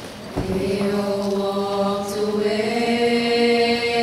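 A group of teenage girls singing in harmony into handheld microphones. After a soft bump about a third of a second in, they come in on long, steady held notes, and the chord shifts up slightly near the end.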